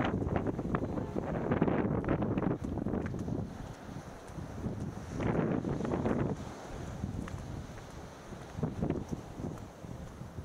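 Wind buffeting the microphone in uneven gusts, heaviest in the first few seconds, dropping back, then surging again about five seconds in and once more near the end.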